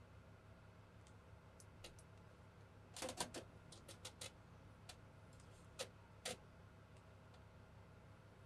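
Faint scattered clicks and light taps of a paintbrush and small model parts being handled on a hobby desk, with a quick cluster of clicks about three seconds in and two more just before and after six seconds, over a low steady hum.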